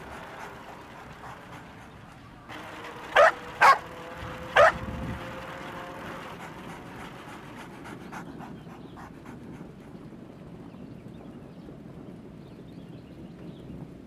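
Dog barking three times in quick succession a few seconds in, over a steady outdoor background hush.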